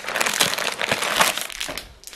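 Crinkling of a protein bar's wrapper as the bar is pulled out of its cardboard box, a dense run of small crackles that tails off near the end.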